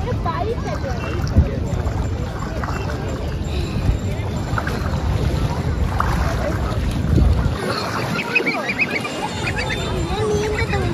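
Wind buffeting the microphone over water sloshing and splashing around people wading in shallow water, with scattered voices of bathers. The rumble of the wind drops away briefly near the end.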